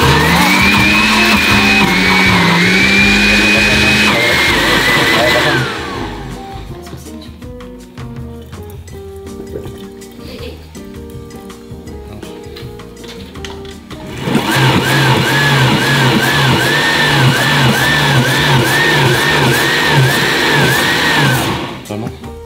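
Countertop blender blending canned tuna with water. It runs twice: first spinning up and winding down about five seconds in, then running again for about seven seconds from the middle until shortly before the end.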